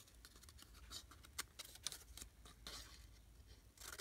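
Small scissors snipping through thin cardboard packaging: a faint, irregular series of short snips.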